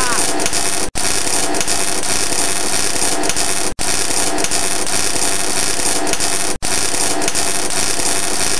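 Electric-shock sound effect: a loud, continuous crackling buzz that cuts out for an instant three times, marking a worker being electrocuted by live electrical equipment.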